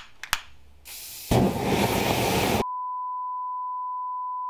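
A lighter clicks twice and an aerosol can starts spraying with a hiss; a moment later the spray catches fire with a much louder rushing noise, used as a makeshift flambé torch. About two and a half seconds in, it cuts off abruptly to a steady high test-tone beep.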